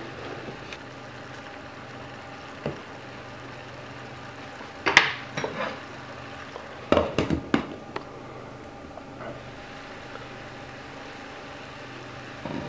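A wooden spatula stirring shredded cabbage in a large stainless steel frying pan, giving a few sharp knocks against the pan, the loudest about five seconds in and a quick run of them about seven seconds in. A steady low hum sits underneath.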